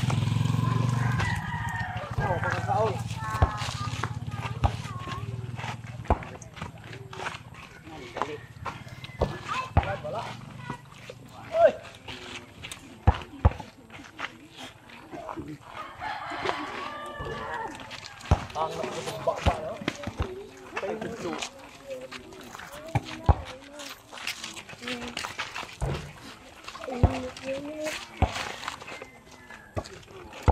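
A motorcycle engine passing close by, its low hum loudest at first and fading away over the first several seconds. Background voices and scattered sharp clicks run through the rest.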